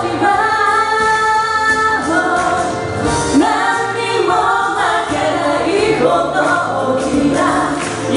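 Mixed-voice a cappella group of eight singing in close harmony through microphones, held chords moving every second or two over a low sung bass line, with no instruments.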